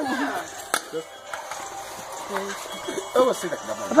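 Indistinct background talk of several people, quieter in the middle, with one sharp click a little under a second in.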